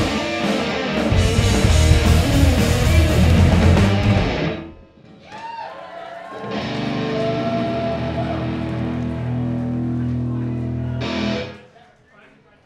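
Live pop punk band, with electric guitars, bass and drums, playing loud until the music stops abruptly about four and a half seconds in. After a short lull a final chord rings out steadily for about five seconds and is cut off near the end.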